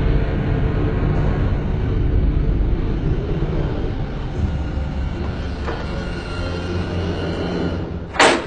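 A loud, steady rumble, heaviest in the bass, easing off slightly over several seconds.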